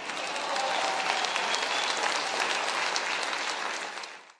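Audience applause, a hall full of people clapping, building up over the first half second and then holding steady.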